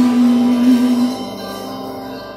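Acoustic guitar chord struck once and left to ring, fading away over the next second or so.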